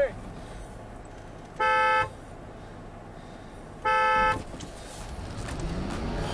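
Two short car-horn honks about two seconds apart, each a single steady tone, given as the ready signal before a kinetic-rope recovery pull of a stuck truck in soft sand. Near the end an engine begins revving up.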